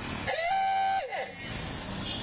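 A vehicle horn sounding once for under a second, its pitch sliding up as it starts and falling away as it stops, over steady traffic and engine noise.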